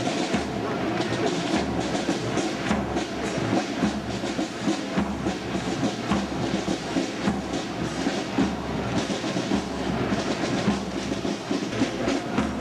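Marching band's snare drums and bass drum beating a marching cadence as the band passes, a dense rhythmic clatter of drum strokes.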